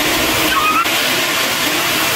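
Public restroom toilet flushing: a steady, loud rush of water.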